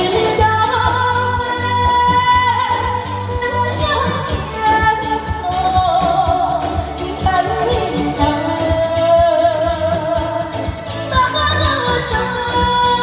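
A woman singing a high-pitched Chinese song live into a microphone over loud musical accompaniment with a steady beat, holding long wavering notes with vibrato.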